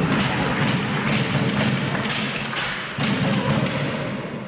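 Background music with a steady percussive beat.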